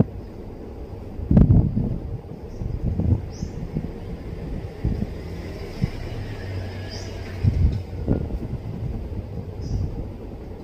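Hand-sewing: faint swishes of thread drawn through cloth, about 3.5 and 7 seconds in, with cloth rustling over a steady low rumble. A few dull thumps break in, the loudest about a second and a half in.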